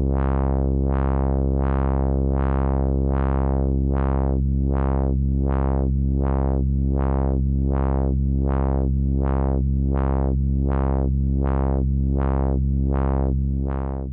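A sustained low synthesizer tone whose filter cutoff is swept by the Elby Designs ChaQuO chaos generator's X output, brightening and dulling in a regular repeating pattern about three times every two seconds. With the damping turned up, the sweeps come out smooth rather than warbling, their shape set by the chaos circuit's rate against the frequency of the quadrature oscillator feeding it.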